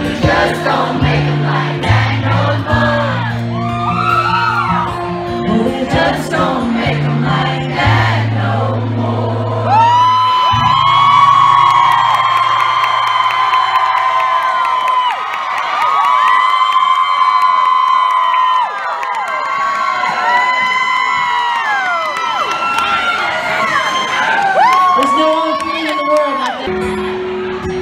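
Live country band with acoustic guitar, recorded from within the crowd, with singing and a crowd cheering. After about ten seconds the bass drops away, leaving long held sung notes over thin backing.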